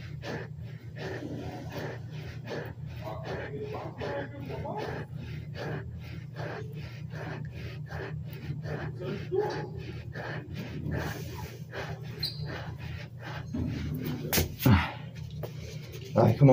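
A man breathing hard, out of breath after a set of push-ups: quick noisy breaths, two or three a second, over a steady low hum.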